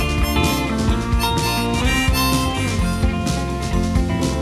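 Live band playing an instrumental passage between verses: a harmonica carries the melody over strummed acoustic guitar and a steady beat.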